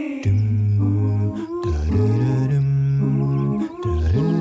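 Vocal-only backing music: layered humming voices hold long notes over a low hummed drone, changing chord a couple of times.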